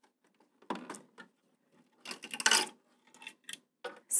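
Evaporator pad assembly of an Air King AK7000 humidifier, a mesh pad in a plastic frame, rubbing and scraping against the housing as it slides out: a short scrape about a second in, a longer, louder scrape past the middle, then a few light clicks near the end.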